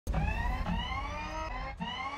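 Car engine sound effect accelerating through the gears. Its pitch climbs, drops back at a shift about two-thirds of a second in and again near the end, over a low rumble.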